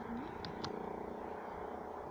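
Quiet steady background noise, with two faint brief high clicks about half a second in.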